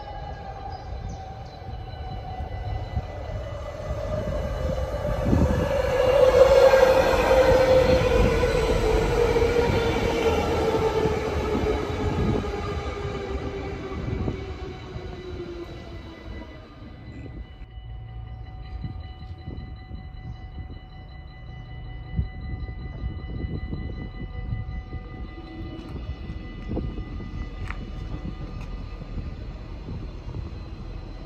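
Passenger train arriving and braking into a station platform. Its running noise swells over the first several seconds with a whine that falls steadily in pitch as it slows, then it settles to a quieter steady hum with a few faint high steady tones once it has stopped.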